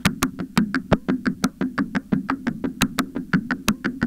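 Make Noise Eurorack modular synthesizer patch, its sound split by the FXDf fixed filter bank, playing a fast sequenced pattern of sharp clicks and knocks, about seven a second, over a steady low drone.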